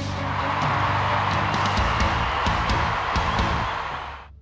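Background music with a steady beat, carried on a dense hiss-like wash of sound that fades out near the end.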